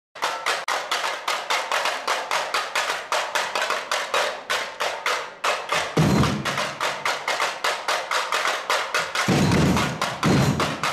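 A section of samba tamborims played with sticks in a fast, even pattern of sharp clicks, about five or six strokes a second. Low bass drums come in briefly about six seconds in and join again near the end.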